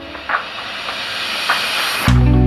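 Steady hiss, with a few faint clicks.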